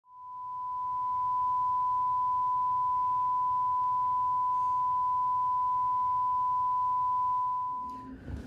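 A steady, single-pitched broadcast test tone at a thousand hertz, the beep that goes with a 'please stand by' test card. It fades in over about a second and a half, holds unchanged, and fades away just before the end.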